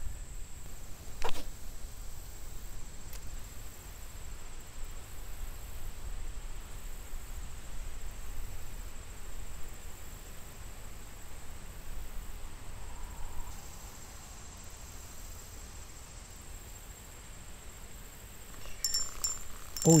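Quiet outdoor ambience: a low rumble and a steady high-pitched tone, with one sharp click about a second in.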